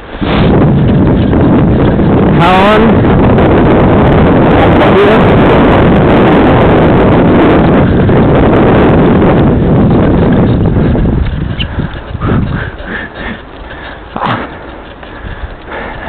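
Loud wind buffeting on the microphone with rumbling from the ride, from fast movement down a paved path. It eases about eleven seconds in to a lighter, uneven rumble with a few knocks. A short vocal cry comes about two and a half seconds in.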